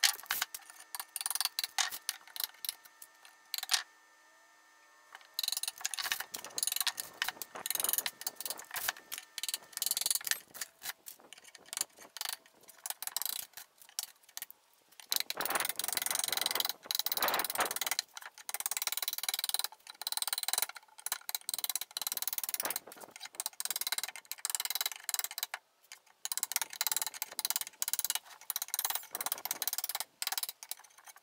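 Hammer tapping a small steel flat bar, driving it under old wood veneer to chip and pry it off a desk top, with quick, irregular metal-on-metal taps and the cracking and scraping of veneer. There is a brief pause about four seconds in.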